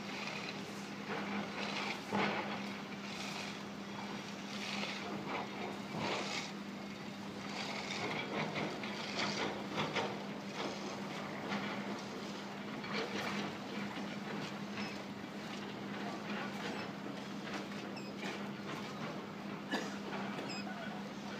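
Jianxing 670B motorised stainless-steel retractable folding gate travelling on its caster wheels, its drive motor humming steadily under irregular rattles and clicks.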